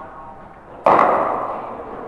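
A single sharp crack of a cricket bat striking the ball, just under a second in, trailing off in the echo of the indoor hall.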